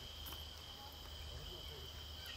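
An insect trilling steadily at one high pitch, faint and continuous.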